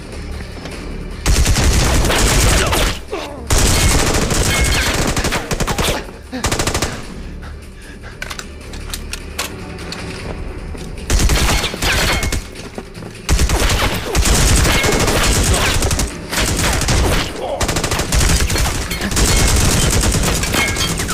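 Bursts of rapid automatic rifle fire in a film gunfight, starting about a second in, easing for a few seconds in the middle, then resuming in long volleys.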